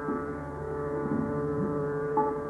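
Tanpura drone sounding steadily in a pause between vocal phrases of a Hindustani khayal, with faint bending notes low down.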